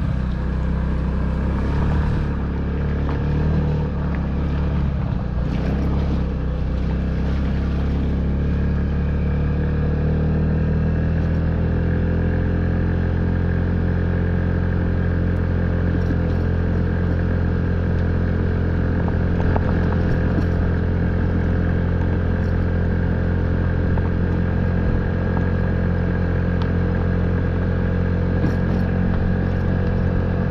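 Honda Ruckus scooter's 49 cc four-stroke single-cylinder engine running under way on a gravel road, its pitch rising a little about ten seconds in and then holding steady. A few knocks from the bike over the rough surface in the first several seconds.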